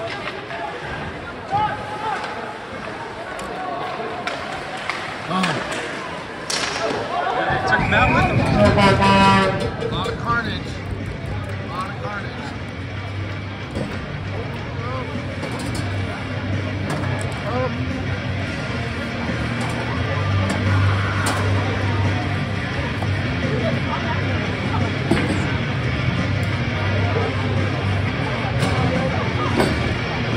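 Ice-rink crowd noise with a horn blaring about eight seconds in, the loudest moment. Then music with a steady low beat plays over the arena's loudspeakers.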